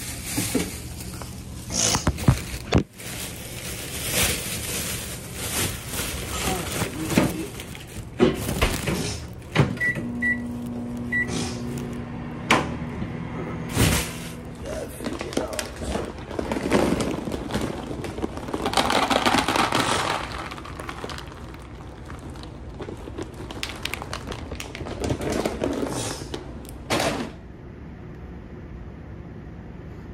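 Kitchen handling clatter and knocks. About ten seconds in, a microwave's keypad gives three short beeps, and the microwave then runs with a steady hum for about four seconds, heating food.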